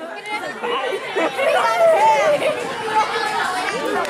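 Several people talking at once in indistinct chatter, with no single clear voice.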